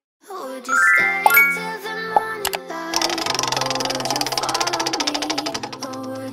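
Game-show style sound effects over light children's music: a rising chime run about a second in and a few sharp clicks. From about halfway through comes a rapid, even ticking of a spinning prize wheel.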